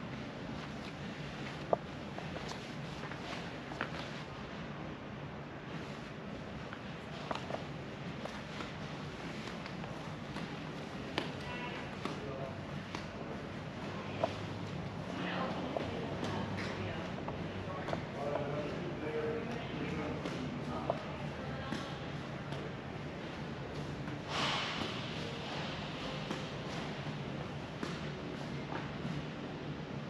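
Ambience of a large indoor hall: a steady low hum with scattered footsteps and light clicks of handling, and faint voices in the middle.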